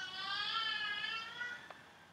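A single long, high-pitched, wavering cry lasting almost two seconds, fading out near the end.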